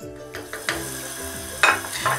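Soft background music over a steady sizzling hiss from a pot of pumpkin soup cooking in broth on a gas hob, with a louder rush of noise near the end.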